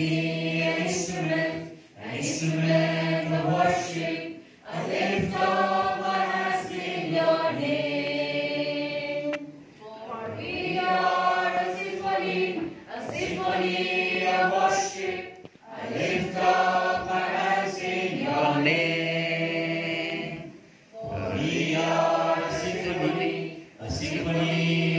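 A roomful of voices singing together in slow, held phrases of about two seconds each, with short breaks between them.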